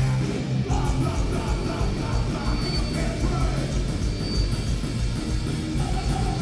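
Rock band playing live: electric guitar, bass guitar and drum kit, loud and continuous.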